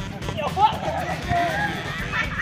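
Volleyball players shouting and calling out to each other in short cries, over background music.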